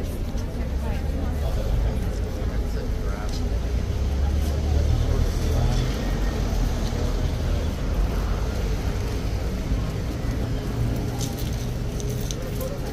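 Busy street ambience: indistinct chatter of a crowd over a steady low rumble of road traffic that swells for a couple of seconds in the middle.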